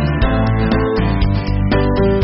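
Instrumental background music led by guitar, with a steady run of picked notes over a bass line.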